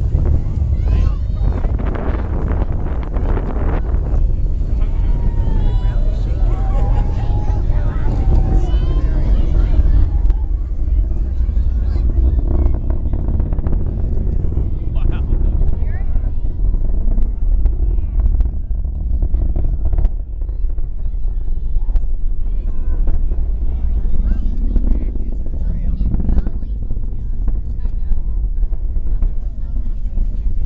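Low, steady rumble of an Atlas V rocket heard from miles away as it climbs after launch, with crowd voices over it during the first ten seconds.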